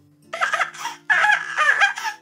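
A voice making a baby's giggling, babbling sounds in two short bursts, over faint background music.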